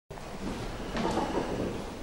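Room noise picked up by the camera's microphone: a steady low rumble with shuffling, and a sharp knock about a second in.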